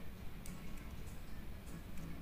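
Faint clicks, one about half a second in and another near the end, as an LCD flex cable connector is pressed by fingertip onto its socket on a Vivo Y91 phone's mainboard.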